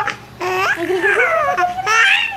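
Baby girl laughing and babbling in a high voice: a brief break just after the start, then one long unbroken run of wavering, rising and falling laugh-sounds.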